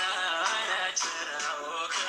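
Music with a singing voice, the melody wavering in pitch.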